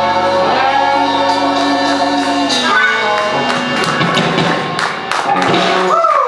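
A live rock band with singing holds out the final chord of a song, which ends about three seconds in. Scattered hand clapping follows.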